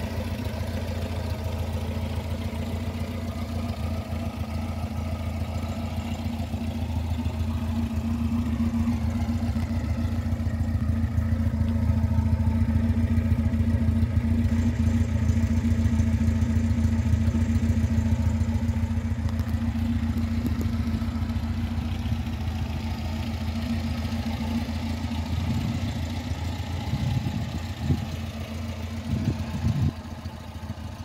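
1966 Alfa Romeo Duetto 1600 Spider's twin-cam four-cylinder engine idling steadily. It grows louder through the middle stretch, where the tailpipe is closest.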